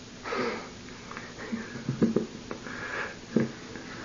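A person's sniff or sharp breath just after the start, followed by a few short, low vocal sounds and breaths from the people in the conversation.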